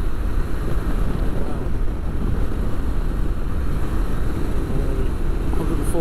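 Steady wind rush and road noise with the drone of a Royal Enfield Himalayan motorcycle cruising at highway speed, heard from the saddle, heaviest in the low end.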